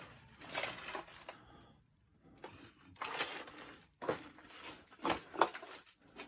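Faint, irregular crunching and rustling of someone moving about, with a short quiet gap about two seconds in.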